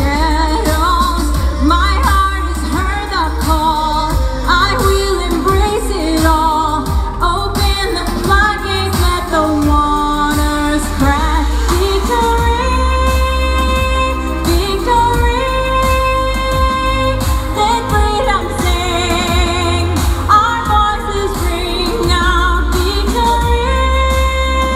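A woman singing into a handheld microphone over backing music with a constant deep bass. The melody moves quickly with wavering notes at first, then turns to long held notes from about halfway through.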